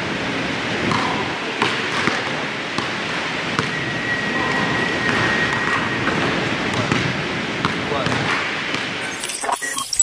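Basketballs bouncing on a gym court with short sharp hits, over a steady background of voices talking. Near the end an electronic sound effect cuts in.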